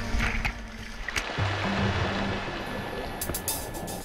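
Rushing, splashing water from a diver churning the surface of a hole in the ice, laid under background music whose low sustained tones come in after about a second and a half. A few sharp clicks sound near the end.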